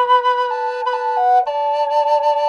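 Brazilian rosewood double Native American flute in mid B sounding two notes at once, the two voices stepping to new pitches separately several times: a walking harmony, each chamber fingered by its own hand.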